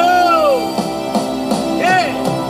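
A man singing through a microphone over a recorded backing track: held notes that rise and fall over sustained chords, with a few drum hits, in a song's big finish.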